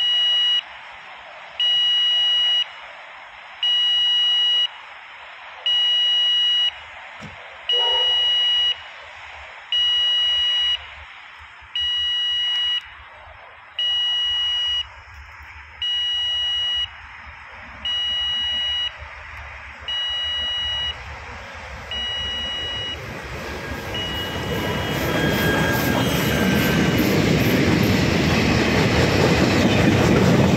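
An electronic warning beep repeats about every two seconds, each beep about a second long at one steady pitch, growing slowly fainter. Over the last quarter a diesel-hauled train, led by a 44 class locomotive, approaches, its rumble and rail noise rising to be loudest at the end.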